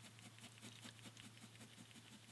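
Faint scratching of a ballpoint pen on paper, a quick run of short hatching strokes shading a drawing.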